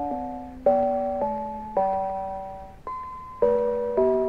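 Mr. Christmas Bells of Christmas (1991) bell set playing a Christmas song in four-part harmony: chime-like bell chords, each struck sharply and dying away, changing about twice a second, with one lone high note near the three-second mark.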